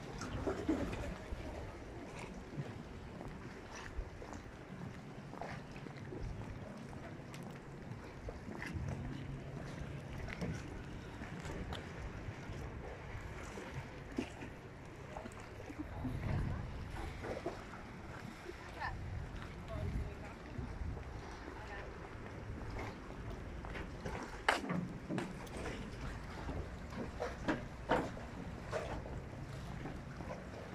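Harbour water lapping and sloshing close by, with wind buffeting the microphone in low rumbles and a few sharp knocks in the last few seconds.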